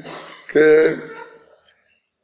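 A man clearing his throat: a rough, breathy rasp followed by a short voiced 'ahem' that trails off about a second and a half in, then silence.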